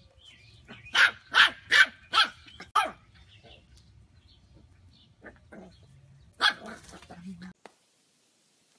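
Puppy barking: five sharp barks in quick succession, then another bark after a pause of a few seconds.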